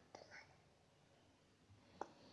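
Near silence: kitchen room tone, with a few faint soft ticks near the start.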